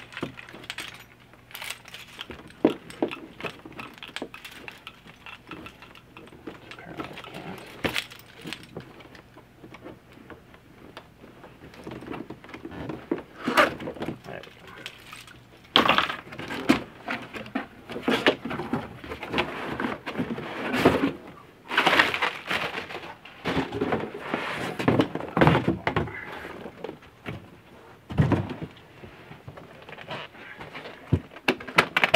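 A cardboard shipping box being opened by hand: packing tape and plastic wrap torn and crinkled, cardboard flaps scraped and knocked, with many sharp clicks. The handling comes in irregular bouts and gets louder in the second half, as the hard guitar case is pulled out of the box.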